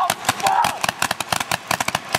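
Paintball markers firing, a fast, irregular string of sharp pops from more than one gun, with a short shout near the start.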